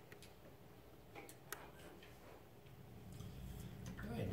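Near silence: quiet room tone with a few faint, scattered clicks.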